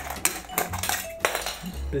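The thin aluminium wall of a drink can being cut through to take its top off: a quick, irregular run of metallic crunches and clicks.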